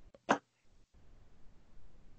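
A single short vocal noise from a man, a brief burst of breath and voice about a third of a second in, followed by faint steady hiss.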